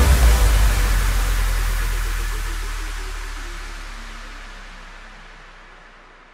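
End of an electronic DJ circuit-mix track: a last hit, then a deep bass note and a hiss-like wash that fade away steadily with no beat.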